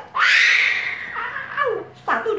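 A sulphur-crested cockatoo giving a loud, harsh screech about a second long, then a shorter call falling in pitch.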